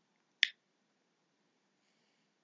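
A single short, sharp click about half a second in, against near silence.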